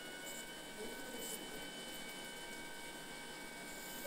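Faint, steady electronic tones from a Stellaris Elite phacoemulsification machine while the phaco handpiece sculpts a trench in the dense cataract nucleus, over a low hum.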